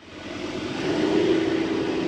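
Four-wheel drive driving along a soft sand track: a steady engine hum with tyre and wind noise, fading in at the start and swelling about a second in.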